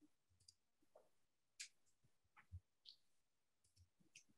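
Near silence broken by several faint, irregularly spaced computer mouse clicks.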